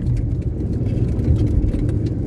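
Steady engine and road rumble of a small car heard from inside the cabin while it drives.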